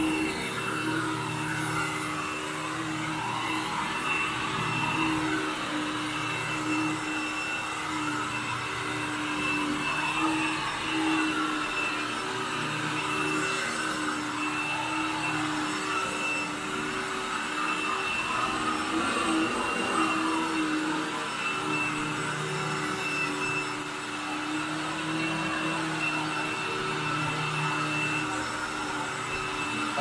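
Orange upright vacuum cleaner running steadily as it is pushed over carpet: an even motor hum with a high whine held over it.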